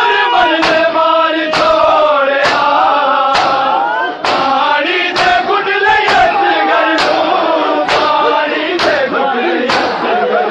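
A large crowd of men beating their chests with their open hands in unison (matam), a sharp slap just under once a second. Behind the slaps, male voices chant a noha, the Shia lament sung to the rhythm of the beating.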